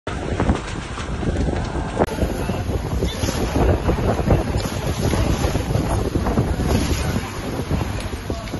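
Fire hoses spraying water into a burning building: a steady rushing noise with a low rumble and many short crackles and pops, with wind buffeting the microphone.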